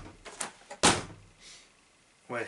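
A single hard thump about a second in, with a faint click shortly before it.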